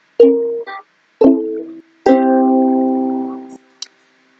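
Ukulele playing a three-note jingle idea: two short plucked notes about a second apart, then a third left to ring for about a second and a half.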